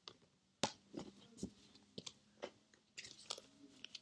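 Faint, irregular rustles and clicks of cardstock flash cards being handled and lowered.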